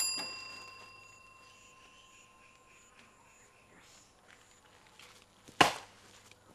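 A single metallic ding at the start that rings on and fades over about two seconds. About five and a half seconds in comes one short, loud thump.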